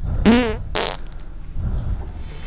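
A short fart-like noise: a wobbling buzz about a quarter second in, followed straight away by a brief hissy burst.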